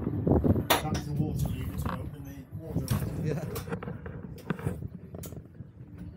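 Indistinct talking with several sharp clicks and knocks scattered through, about one a second.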